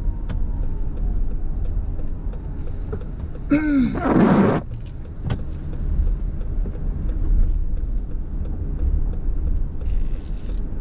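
Car cabin noise: a steady low road and engine rumble with a faint, regular ticking at about two ticks a second, typical of a turn signal. About three and a half seconds in, a short loud voice-like sound with a bending pitch cuts across it.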